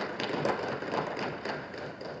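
A pause between spoken sentences, filled by the room's background noise: a low, even hiss with a few faint clicks, slowly fading.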